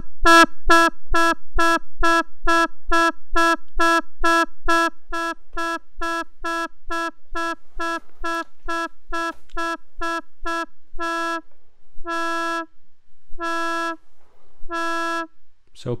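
Synthesizer drone from an Erica Synths Graphic VCO through a Tiptop Z2040 low-pass filter, its cutoff swept by the ROTLFO's sine-wave LFO, so the tone pulses open and shut about two and a half times a second. About two-thirds of the way through, the pulses slow to about one a second.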